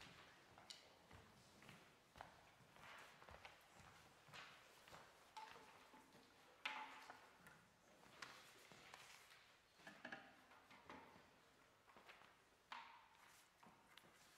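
Near silence broken by faint footsteps and scattered small knocks on a wooden stage, with soft paper rustling as sheet music is handled.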